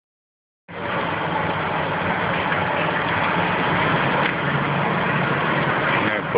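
Fire apparatus engine running steadily: a low, even engine hum under a broad steady rushing noise. It starts abruptly just under a second in.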